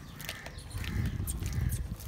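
Low rumbling and shuffling sounds from a herd of Kundhi water buffaloes, with crows cawing faintly.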